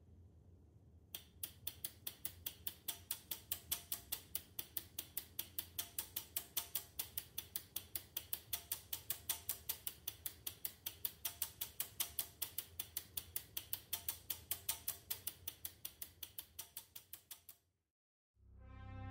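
Electromechanical relays of a homebuilt relay computer and its breadboard sequencer clicking in a fast, even rhythm of about five clicks a second as the sequencer steps and the program counter advances. The clicking starts about a second in and cuts off suddenly near the end.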